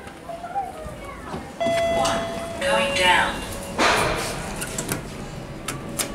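A person's voice in a small lift car, with a steady tone held for about a second, starting about a second and a half in.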